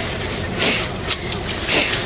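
Steady background noise with two short hissing sounds, about half a second in and near the end.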